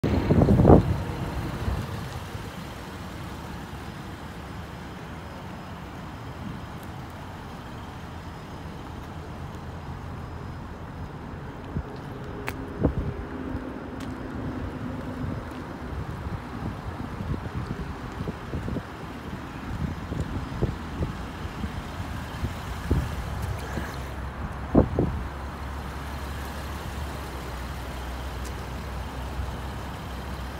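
A steady low rumble of vehicle noise, with a few knocks and bumps; the loudest come at the very start and about 25 seconds in.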